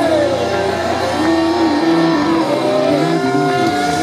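Live band music with electric guitar and bass, loud and steady; a held note slides down in pitch just after the start, and sustained notes carry on with a smaller slide near the middle.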